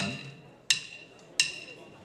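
Sharp percussion clicks keeping a steady beat, three of them about 0.7 s apart, each with a short bright ring, counting the band in; a voice calls 'one' on the first click.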